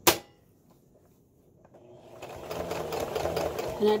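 A sharp click, then about two seconds later an electric sewing machine starts and builds up speed, running steadily as it top-stitches over an existing line of stitching.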